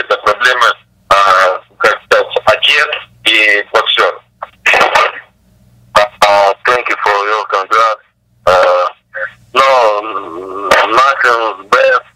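Speech only: a person talking over a telephone conference line, in phrases broken by short pauses.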